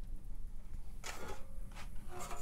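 Quiet room noise with a low steady rumble and faint handling of a sheet-metal electrical enclosure, without any distinct knock.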